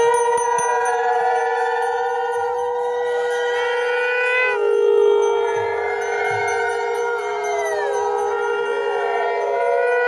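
Several conch shells (shankha) blown together in long held notes. The notes overlap, and each one sags downward in pitch as the blower runs out of breath.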